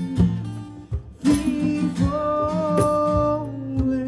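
Live acoustic guitar strumming with drum and conga hits in an instrumental passage of a rock/country song. A long held note sounds over it about halfway through.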